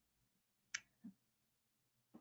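Near silence with a faint room hum, broken by one short sharp click a little under a second in and a fainter soft knock just after it.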